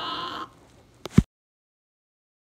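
A voice's drawn-out, wavering wail cuts off about half a second in. Two sharp clicks and a thump follow about a second in, then dead silence.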